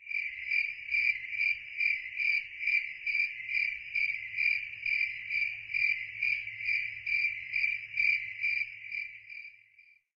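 Cricket-like insect chirping: a steady high-pitched chirp pulsing about two and a half times a second, fading out near the end.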